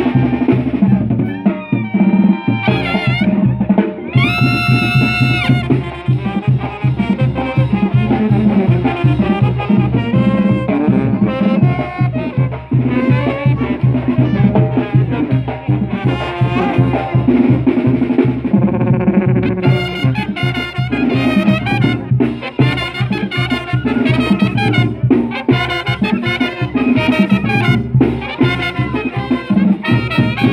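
Brass band music with trumpets over a steady, driving drum beat, including a long held brass chord a few seconds in.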